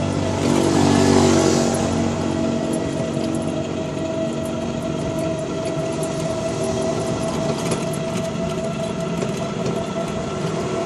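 Electric trike on the move: a steady whine from its motor over rattling from the body and road noise. A louder rush swells about a second in and then fades back.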